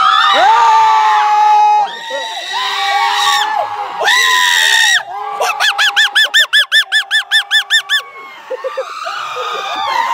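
Men yelling: several long, high-pitched held shouts, then a rapid warbling yell of about five pulses a second from about five and a half to eight seconds in.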